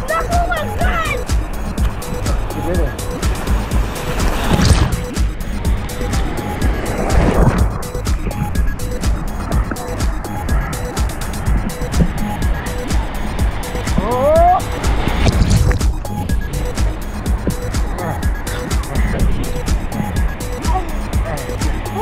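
Ocean surf churning around a waterproof camera held at water level, a steady rush of water with louder washes about four and a half and seven and a half seconds in as waves break over it. A voice cries out briefly near the start and again about two-thirds of the way through.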